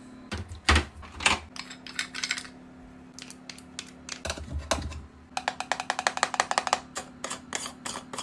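Long fingernails tapping and clicking on plastic and glass cosmetic containers: scattered single taps, then a fast flurry of taps from about five and a half to seven seconds in.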